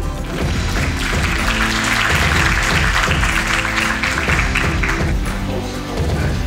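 Background music with an audience applauding over it; the clapping swells in at the start and dies away about five seconds in.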